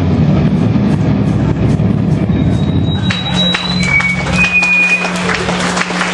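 Live hardcore band's music trailing off. A loud, dense low wash thins about halfway through into a steady held low note from the amps, with brief high whistling tones and scattered drum or cymbal hits over it.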